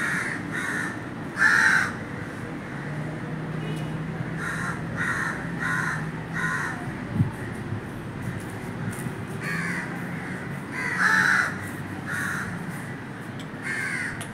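Crows cawing: short harsh caws in loose runs of three or four, the loudest about a second and a half in and again about eleven seconds in.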